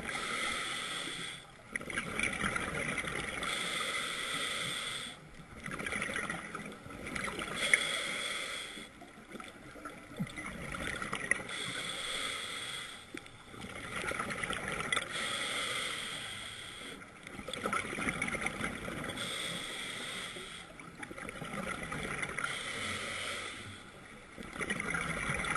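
A scuba diver's regulator breathing, heard underwater through the camera housing: a hiss on each inhale alternates with a burst of exhaled bubbles, about every three to four seconds.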